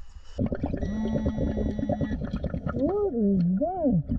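Underwater bubbling from a scuba regulator, starting suddenly about half a second in. Through it comes a muffled voice: first a steady hum, then a sound that glides up and down in pitch near the end.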